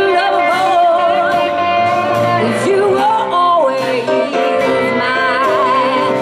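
A woman singing lead with a live band of acoustic guitar, keyboard and drums, holding long notes with a wavering vibrato over steady drum hits.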